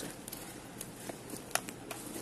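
Faint rustling and a few light clicks of someone rummaging through a handbag for a tape measure, the sharpest click about one and a half seconds in.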